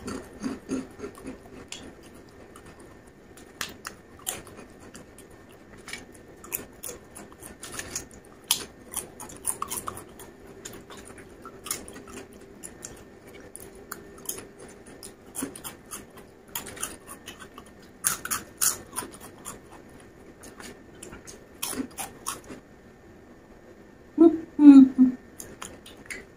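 Close-up chewing of crunchy fried snacks, Taka Tak corn sticks and potato chips: runs of sharp, crisp crunches a few seconds apart with short pauses between.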